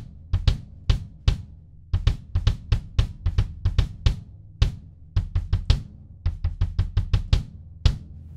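DW Collector's 18 x 23-inch kick drum played in a run of quick, uneven strokes, with the snare wires on and buzzing along in sympathy.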